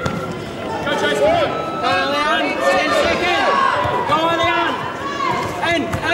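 Several people shouting and calling out in a large hall, voices overlapping, with a few faint thuds.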